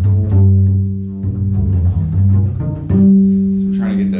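Double bass played pizzicato: a slow line of plucked low notes, the last one ringing on from about three seconds in.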